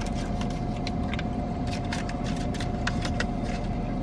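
Aluminium foil wrapper crinkling in many short crackles as a burrito is handled and rewrapped, over a steady low hum with a faint steady tone from the car.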